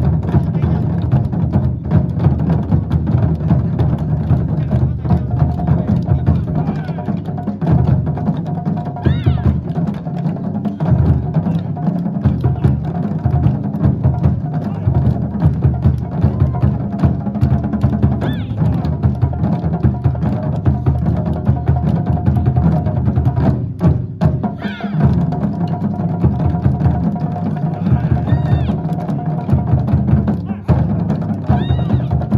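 A Japanese taiko drum ensemble playing a dense run of strikes on large barrel drums, with a steady melodic line held above the drumming.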